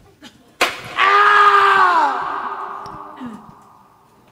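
A sharp smack, then a loud pained scream held for about a second that falls in pitch and dies away with an echoing tail.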